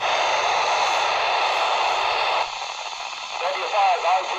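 Kenwood TH-D72A handheld radio receiving the SO-50 satellite's FM downlink on a whip antenna: a loud hiss of static opens suddenly, drops in level about halfway through, and a weak operator's voice starts coming through the noise near the end.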